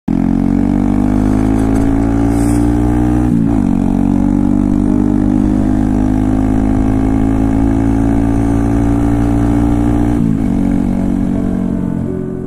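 Honda Grom's small single-cylinder engine pulling steadily under way, heard from the rider's helmet camera. Its note dips briefly about three seconds in and again near the ten-second mark.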